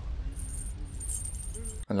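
Anime soundtrack between lines of dialogue: a low rumble with a thin, high metallic jingle over it, both cutting off suddenly near the end, where a man starts to speak.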